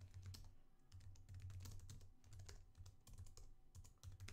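Faint typing on a computer keyboard: a quick run of keystrokes, several a second, over a low steady hum.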